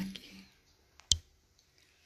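A single short, sharp click about a second in, from something handled while the phone camera is being turned toward the canvas.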